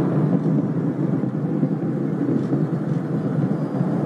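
Steady, loud roar of the Space Shuttle's solid rocket booster burning during ascent, heard on board the booster, with a rushing, noisy rumble and no single pitch.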